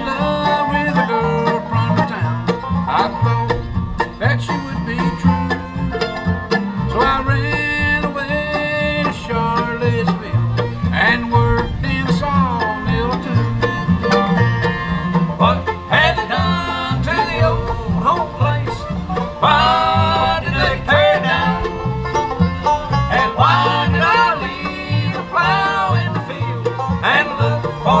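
Acoustic bluegrass band playing an instrumental break: banjo, fiddle, mandolin, dobro, acoustic guitar and upright bass, with the bass keeping a steady alternating beat underneath.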